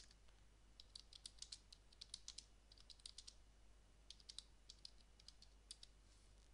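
Faint typing on a computer keyboard: runs of quick keystrokes with short pauses between them.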